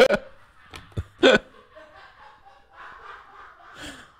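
A man laughing: a sharp burst of laughter at the start and another loud burst about a second in, followed by faint, indistinct voices.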